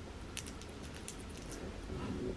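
Faint small clicks and ticks of jewellery being handled as an ankle bracelet is fastened, with a few quick ticks spread through the middle.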